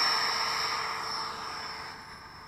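Electric ducted fan of a radio-controlled MiG-17 model jet at takeoff power, a steady high whine over a rush of air, slowly fading as the model climbs away.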